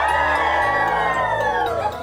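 A class of young children cheering together in one long shout that slowly falls in pitch, over background music.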